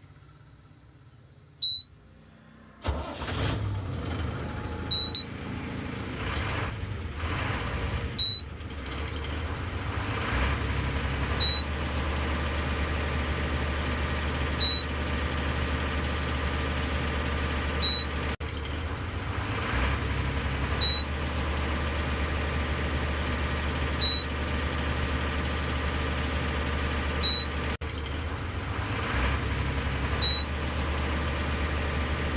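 A bus engine starts about three seconds in and runs at a steady idle, its low rumble growing heavier about ten seconds in. A short high beep repeats about every three seconds throughout.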